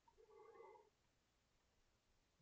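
Near silence: room tone, with one very faint, brief sound about half a second in.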